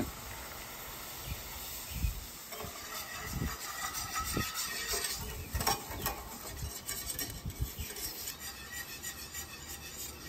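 Wire whisk scraping and stirring against a steel skillet in quick, irregular strokes, working half-and-half into a butter-and-flour roux for cream gravy.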